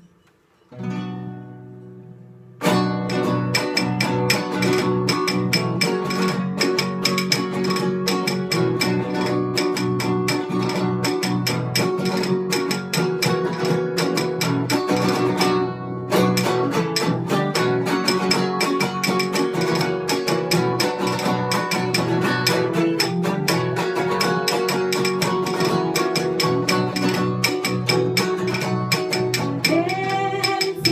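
Classical guitar playing a cueca as an instrumental introduction: one chord rings out about a second in, then steady rhythmic strumming starts near three seconds in and runs on, with a brief break about halfway through.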